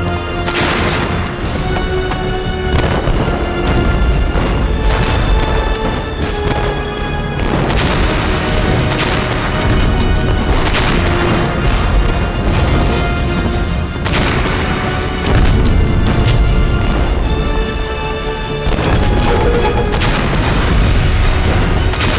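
A series of film explosion effects going off every few seconds over a dramatic music score with sustained notes.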